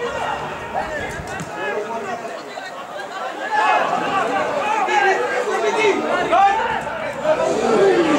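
Chatter of several people talking and calling out over one another, none of it clear, getting louder about halfway through.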